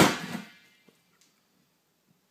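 A single sudden loud bang or crash that dies away within about half a second.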